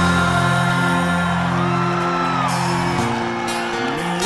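Live band music: a male voice singing over held electric and acoustic guitar chords, at a slow, even loudness.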